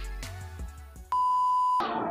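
Faint background music fading out, then a single steady, high electronic beep that starts and stops abruptly and lasts under a second, an edited-in tone at a cut.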